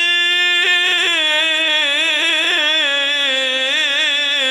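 A man's voice reciting the Quran in the melodic tajweed style, holding one long, unbroken note with wavering ornaments.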